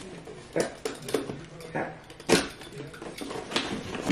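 Cardboard advent-calendar box being pried open and handled: a few sharp knocks and scrapes of cardboard, the loudest a little past halfway, under quiet murmuring voices.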